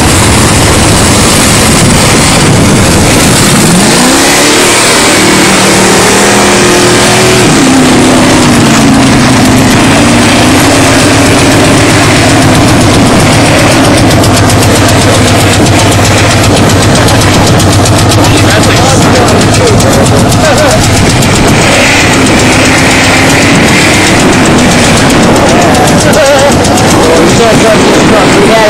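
Dodge pickup's engine revving hard, its pitch climbing and sinking again and again as it churns through deep wet snow, under a loud, constant rush of noise.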